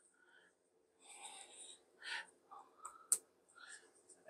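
Faint handling of a phone and USB-C charging cable, with small rustles and ticks and one sharp click about three seconds in as the plug is pushed into the phone's port.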